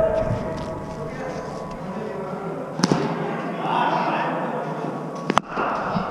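Cricket ball impacts in an indoor net hall: two sharp cracks, one about three seconds in and a louder double crack just after five seconds, over a steady background of hall noise and distant voices.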